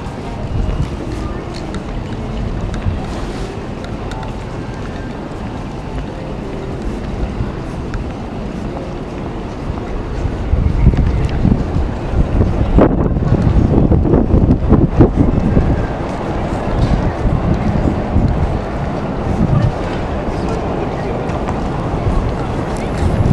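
Busy outdoor crowd ambience, with voices of passers-by, under a low rumble of wind on the microphone that grows louder for several seconds about halfway through.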